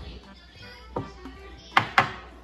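A drinking glass set down on a glass tabletop with a sharp knock near the end, a smaller click about halfway, over faint background music.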